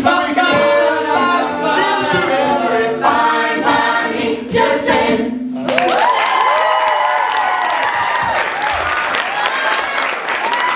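An a cappella group singing, a male lead voice over layered backing vocals, the song ending a little over halfway through. The audience then breaks into applause and cheering.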